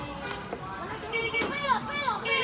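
High-pitched children's voices talking and calling, with falling calls in the second half and a couple of short clicks.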